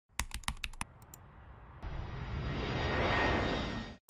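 A few quick computer keyboard key clicks, then a jet plane sound effect playing from the editor. It swells to its loudest about three seconds in and is cut off abruptly.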